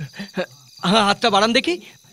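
Crickets chirring steadily in the background, with a voice speaking briefly about a second in.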